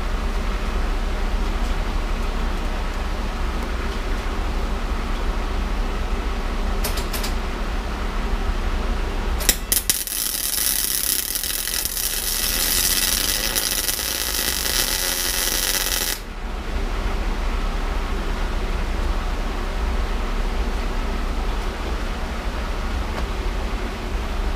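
Electric arc welder running for about six seconds from just under ten seconds in, a steady crackling sizzle that cuts off sharply, as a nut is welded onto a broken exhaust stud in a cylinder head to get a grip for removing it. Two short clicks come a few seconds before the arc strikes.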